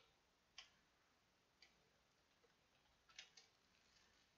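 Near silence with a few faint, short clicks from a computer's keys or mouse buttons: one about half a second in, another about a second later, and a quick cluster of three near the end.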